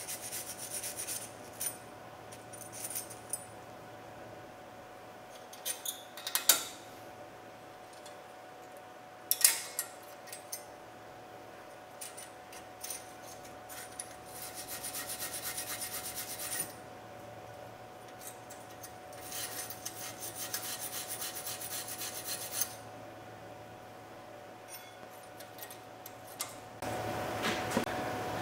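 Wire brush scrubbing the brake caliper bracket where the pads slide, cleaning out rust and dirt, in several bursts of quick scratchy strokes a few seconds apart, the longest about three seconds. A faint steady hum runs underneath.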